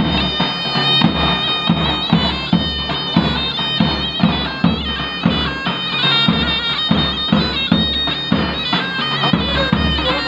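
Zurna (Turkish shawm) playing a loud, nasal folk melody over a steady beat of a davul, the large double-headed bass drum.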